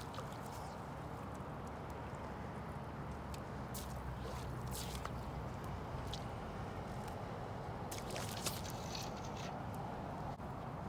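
Spey casting on a river: the fly line tearing off and slapping the water surface in short hissing, splashy bursts, several times and busiest near the end, over a steady low rumble.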